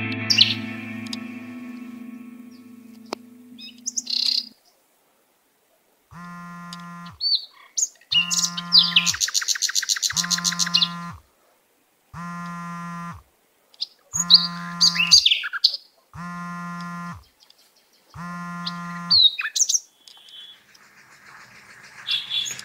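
An electric guitar chord rings out and fades away over the first four seconds. Then a mobile phone buzzes on vibrate in one-second pulses about two seconds apart, seven times, an incoming call. Birds chirp among the buzzes.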